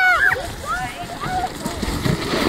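A high-pitched voice letting out several short rising-and-falling whoops. Near the end comes the rushing hiss of a plastic sled sliding through snow.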